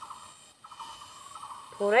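An insect trilling steadily in a thin, even, rapidly pulsed buzz that breaks off briefly about half a second in. A voice starts speaking near the end.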